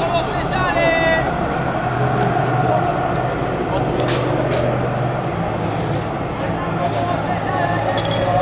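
Football supporters chanting and singing en masse, a steady wall of voices mixed with people talking nearby.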